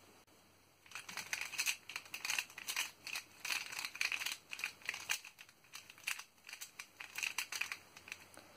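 X-Man Volt Square-1 puzzle being scrambled: a quick, irregular run of small plastic clicks and clacks as its layers are turned and sliced, starting about a second in.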